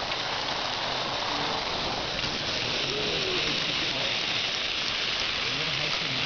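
VEX robot's motors and plastic tread conveyor belt running, a steady hiss-like whir with no distinct beats.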